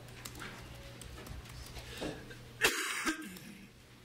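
Quiet room noise in a meeting chamber with a few faint clicks, then a single short, loud cough about three-quarters of the way through.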